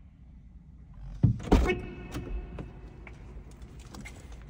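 Car door opened from outside: two sharp clunks of the handle and latch about a second in, followed by a steady tone that fades over about a second and a half, then a few light clicks.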